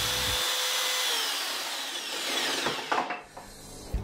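Electric jigsaw cutting through pine furniture board, finishing the cut; about a second in, the motor whine starts falling in pitch as the saw winds down, coasting to a stop by about three seconds. A few light knocks follow near the end.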